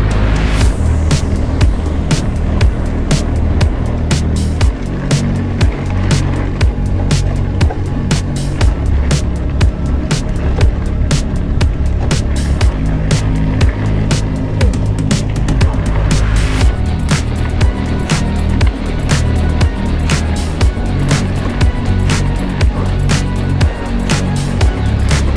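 Background music with a steady drum beat and heavy bass.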